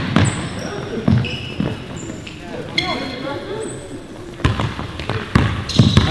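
Basketball bouncing on an indoor court in an irregular run of thuds, with short high-pitched squeaks of sneakers among them.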